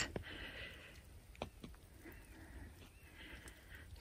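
Faint, quiet outdoor ambience with a couple of soft clicks about a second and a half in.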